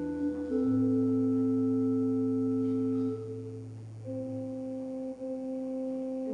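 Slow instrumental church music on a keyboard: long held chords that change every second or so, over a low bass note that stops about four seconds in.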